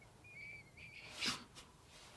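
A man whistling softly under his breath, two short high notes, followed about a second and a quarter in by one short sharp puff of noise.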